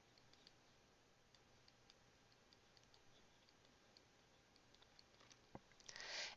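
Near silence, with faint, irregular light ticks of a stylus tapping on a drawing tablet as words are handwritten.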